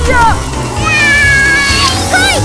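High-pitched yelps of pain from a person hit by toy blaster shots: a short rising-and-falling cry, then one long high cry that sags slightly in pitch. Background music plays underneath.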